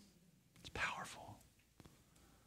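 A brief, faint whisper of a person's voice about a second in, during an otherwise quiet pause, with a small click near the end.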